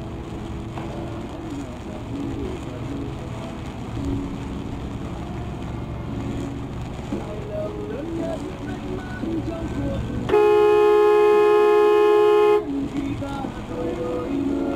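Road and engine rumble, then about ten seconds in a single long horn blast of a little over two seconds on one steady note, cutting off sharply.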